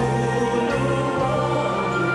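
Slow Tagalog gospel ballad with long held chords and a bass line, and a man singing into a handheld microphone.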